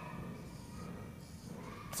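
Faint sound of a marker writing on a whiteboard, with a few thin squeaks, over quiet room tone.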